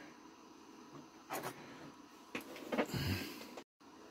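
A few brief, quiet handling sounds, short rustles and light knocks, as a model is worked on by hand, with room tone between them. The sound drops out for an instant near the end.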